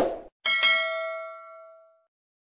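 Subscribe-button sound effect: a quick click at the very start, then a bell-like notification ding about half a second in, ringing on with a few clear tones and fading out over about a second and a half.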